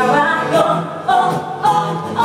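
Live song: a singer's voice carrying a melody into a microphone, with acoustic guitar accompaniment.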